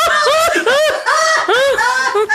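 A person laughing in a run of high-pitched rising-and-falling pulses, about three a second.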